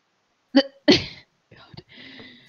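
A person sneezing once, about half a second in: a short catch of the voice and then a louder burst that trails off.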